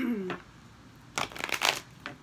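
A deck of tarot cards being shuffled: a quick crisp riffle of flicking cards lasting under a second, starting about a second in. A short falling hum of a woman's voice comes just before it at the start.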